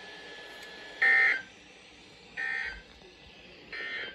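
Three short, shrill data bursts of the NOAA Weather Radio SAME end-of-message code from a weather radio's speaker, sent once the test message ends. They come about a second and a third apart, each fainter than the one before.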